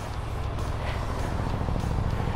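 KTM parallel-twin motorcycle engine idling steadily at a standstill.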